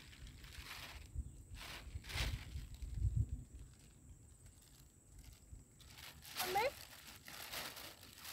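Quiet outdoor ambience with low rumbles of wind on the microphone, a few brief soft noises, and a short rising voice-like call about six and a half seconds in.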